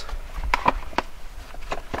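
Hard plastic clicks and knocks from the folding frame and latches of a portable camping toilet being folded up, about four sharp taps over a low steady rumble.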